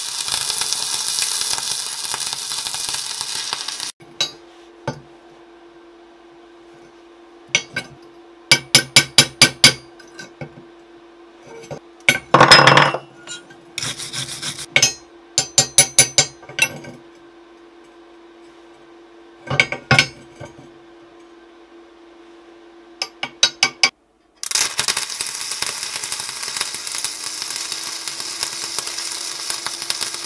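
Arc welding on steel, a steady crackling hiss for about four seconds. It gives way to a series of sharp hammer strikes and taps on steel, with a quick run of blows and a short louder rasping burst partway through. The welding crackle starts again for the last few seconds.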